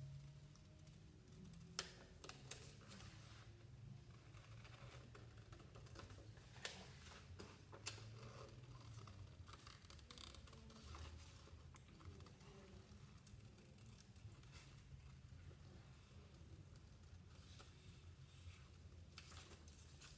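Faint, irregular snips of hand scissors cutting through red paper, with light paper handling between cuts.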